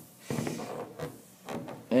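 A sneaker being turned and slid by hand across a wooden tabletop: a short rubbing scrape, then a few lighter bumps.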